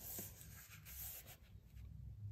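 Faint rustle of a paper square being slid and smoothed flat by hand on a cardboard surface, fading after about a second.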